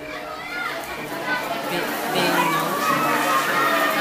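Chatter of many students' voices overlapping, growing louder about halfway through.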